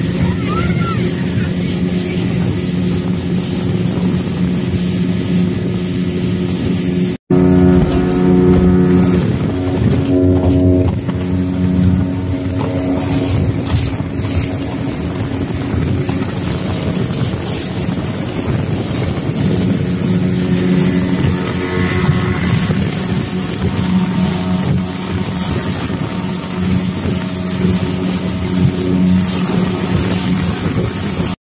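Speedboat engine running steadily under way, with the rush of wind and water around the hull. It cuts out for an instant about seven seconds in and comes back louder.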